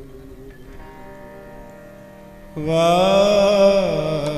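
Kirtan on harmonium: quiet sustained harmonium notes, then a little past halfway a male singer comes in loudly with one long, wavering sung phrase over the harmonium.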